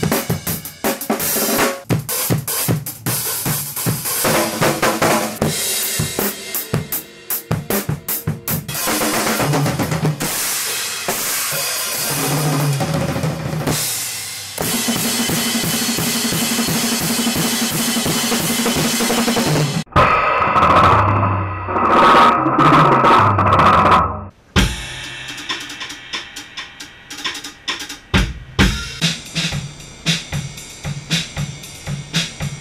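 Drum kit played in an improvised experimental rock jam with electric bass and electric guitar, with dense kick, snare and cymbal hits. The music jumps abruptly to a different passage about 20 seconds in and again about 24 seconds in.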